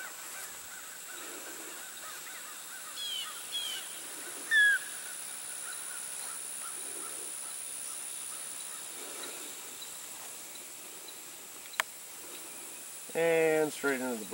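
Outdoor field ambience: a steady high-pitched whine, with a few short bird calls about three to five seconds in. A man's voice starts about a second before the end.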